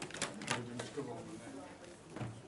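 Indistinct voices of people talking in the room, with a couple of sharp clicks close to the microphone in the first half second.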